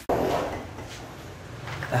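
A sudden clunk just after the start that fades into room noise; a man begins speaking near the end.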